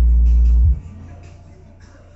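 Alpine W10S4 10-inch subwoofer playing bass-heavy music: a very loud, deep sustained bass note cuts off under a second in, leaving a much quieter low bass line.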